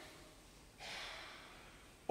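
A man drawing a faint breath into a close pulpit microphone, about a second in, between spoken sentences.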